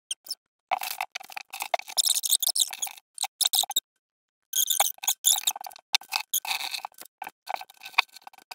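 Small plastic Lego pieces clicking and rattling as they are fitted together and rummaged through in a loose pile, in choppy stretches with sudden silent gaps.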